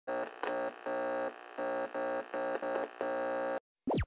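Intro sound effect: an electrical buzzing hum that stutters on and off several times, then a short falling glide like a set powering down, and it cuts off.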